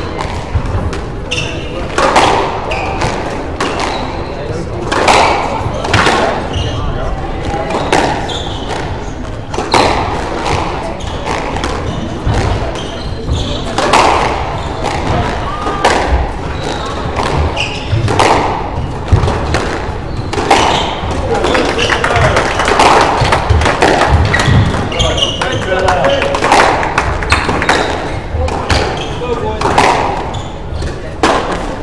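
Squash rally: the ball struck by rackets and hitting the court walls, with sharp hits coming irregularly every second or two.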